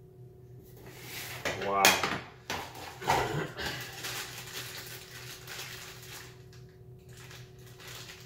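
Plastic hardware bags and small plastic parts rustling and clicking as they are handled and set down, over a steady low hum.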